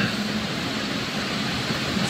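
Steady, even hiss of room background noise with no distinct event.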